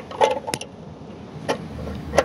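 A few sharp metal clicks and clinks as the fuel filter's mounting bracket and hand tools are worked under a car, with a low rumble in the last half second.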